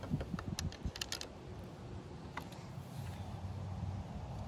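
Light metal clicks and taps from a TiGr Mini titanium bow lock being handled and fitted through a Onewheel Pint's wheel, several in the first second or so and one more about two and a half seconds in.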